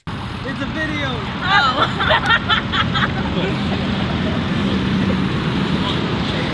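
Steady road-traffic noise from passing vehicles, with a brief burst of people's voices between about one and a half and three seconds in.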